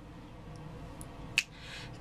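A single sharp finger snap about one and a half seconds in, over quiet room noise, with a fainter tick just before it.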